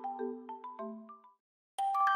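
Background music: a light tune of short struck, bell-like notes that fades out about a second and a half in. After a brief silence, a new ringing chord starts near the end.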